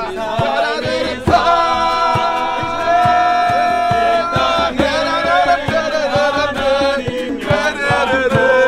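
A group of voices singing a worship song in unison, accompanied by two strummed acoustic guitars and a djembe hand drum keeping a steady beat.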